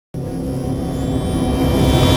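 Cinematic title-intro music: a low rumbling drone that starts abruptly a moment in and slowly swells.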